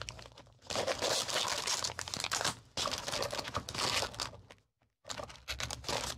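Clear plastic sleeves and paper packets being leafed through by hand, crinkling and rustling in quick, irregular bursts. The sound drops out completely for a moment just before five seconds in.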